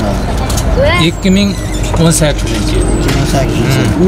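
People talking in conversation, with a steady low background rumble underneath.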